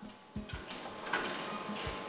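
Egg grading machine running, a steady mechanical clatter of its roller conveyor and egg trays, starting with a knock under half a second in.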